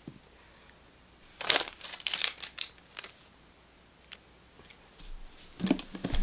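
Rustling and handling noises from hands moving against clothing and objects: a cluster of short rustles about one and a half to three seconds in, a few light clicks, then more handling noise near the end as a hand reaches for the camera.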